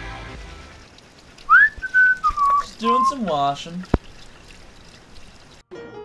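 A short whistled note that rises, holds, then drops, followed by a voice-like call sliding up and down in pitch and a single sharp click. Music fades out before the whistle and starts again near the end.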